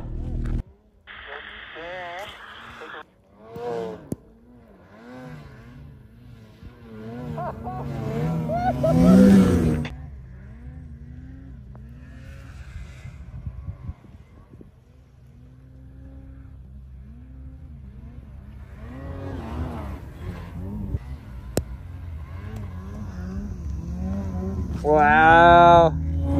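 Snowmobile engines revving unevenly in deep powder, their pitch rising and falling as the throttle is worked. There is a louder run of revs about eight to ten seconds in, and a sharp rise and fall just before the end.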